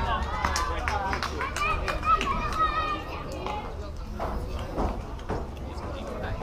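Young girls' voices shouting and chattering across an outdoor ball field, with a few sharp knocks; the loudest knock comes about two seconds in. The calling is strongest in the first half and fades after about three seconds.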